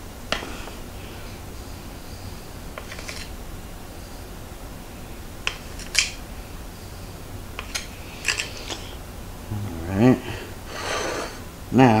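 A table knife cutting through soft chocolate fudge and clicking and scraping against a ceramic plate: a scattering of short sharp clicks, the sharpest about halfway through. A man's voice comes in near the end.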